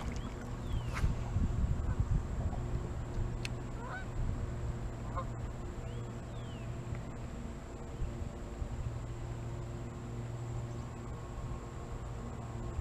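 Electric trolling motor on a bass boat humming steadily as the boat creeps forward, with a few faint short chirps over it.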